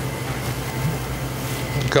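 Steady low hum and air hiss of the catheterization lab's equipment and ventilation, with a faint thin high tone.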